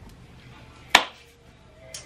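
A single sharp knock about a second in, a hard object set down on a hard surface, amid quiet room tone.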